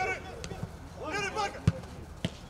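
Players' short shouts on a football pitch, then a single sharp thud near the end as the ball is struck on a shot at goal.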